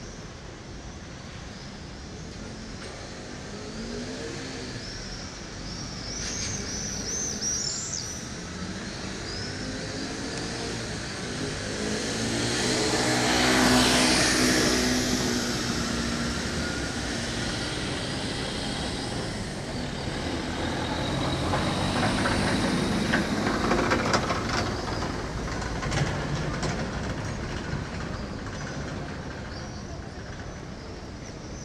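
Street ambience with a motor vehicle passing close by: its engine and tyre noise swell to the loudest point about halfway through, then fade. A second vehicle passes about two-thirds of the way in, and a few quick high chirps sound about a quarter of the way in.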